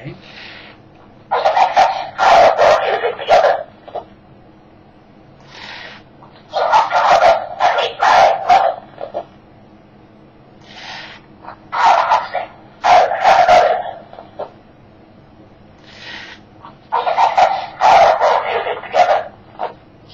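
1964 Mattel Herman Munster pull-string talking doll's voice box playing recorded phrases from its small record, four times about five seconds apart, a tinny mid-range voice. A brief soft noise comes just before each phrase.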